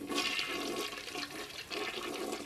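Toilet flushing: a steady rush of water.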